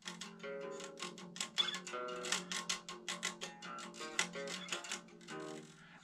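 Electric guitar picked in a quick run of single notes, several attacks a second.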